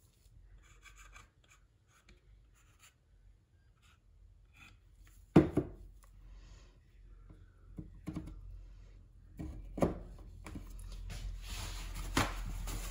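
Quiet handling of laser-cut plywood pieces and a glue bottle on a work table: scattered small clicks and rustles, a sharp knock about five seconds in, a few lighter knocks later, and rubbing near the end.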